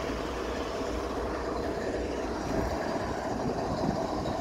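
GE ES44C4 diesel locomotive idling while parked, a steady low rumble.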